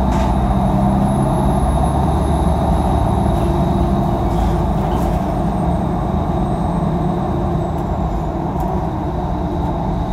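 Inside a 2016 Nova Bus LFS city bus under way: the steady drone of its engine and drivetrain with road noise, easing a little in the second half, and a faint high whine over it.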